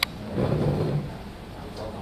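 A single sharp click, then a brief stretch of indistinct voices and general room murmur in a large, hard-walled room.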